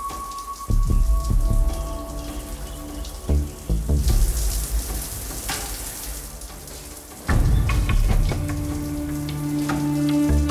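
Shower water running as a steady hiss, heaviest from about four to seven seconds in, under background music with held notes and heavy low beats.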